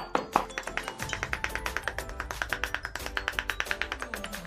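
Steel cleaver chopping red chillies on a wooden board in rapid, evenly spaced strokes, the hardest chops in the first second, over background music.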